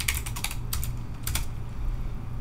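Computer keyboard keys clicking as a file name is typed: a quick run of keystrokes at the start, then a few scattered presses. A low steady hum runs underneath.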